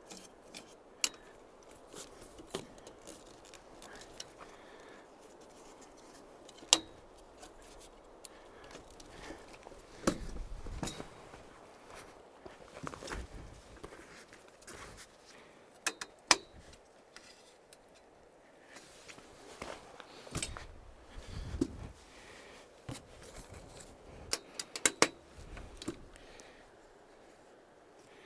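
Metal frame of a heavy-duty camp stretcher being handled: scattered sharp clicks and knocks with some scraping as anti-sway bars are fitted to its legs, and a couple of duller thumps as the frame is set down and shifted.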